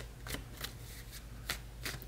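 A deck of tarot cards being shuffled in the hands: a string of irregular soft flicks and taps as the cards slide and drop against each other.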